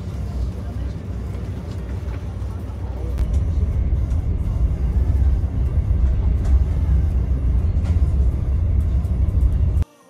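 Steady low rumble of a moving VIA Rail passenger train heard from inside the coach, growing louder about three seconds in. It cuts off suddenly just before the end.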